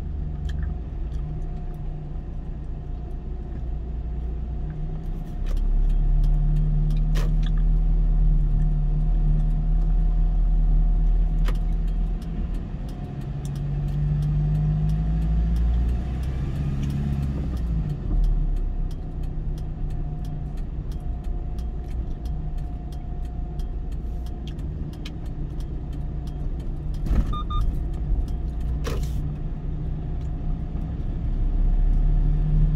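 Car engine and road rumble while driving in city traffic. The engine gets louder as the car pulls away about five seconds in, then rises and falls in pitch around the middle. A few short sharp knocks come through, two of them near the end.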